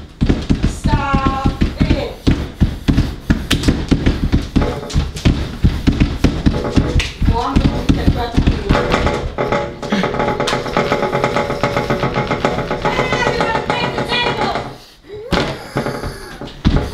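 Fast, irregular thumping and tapping from a man stomping his feet against the burn of a super-hot pepper chip, over the first half. After that come held musical tones with a voice over them.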